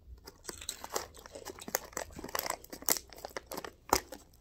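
Crunching of a freeze-dried Skittle being chewed, mixed with the crinkle of a foil candy pouch being handled: a quick, irregular string of sharp crackles, the sharpest near the end.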